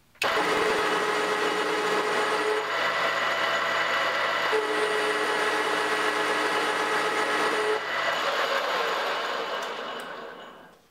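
ENCO metal lathe running under a heavy turning cut on a metal bar, a steady machine whine with held tones over cutting noise. The cut is pushed hard enough to overheat and discolour the workpiece. The sound eases off about eight seconds in and fades by the end.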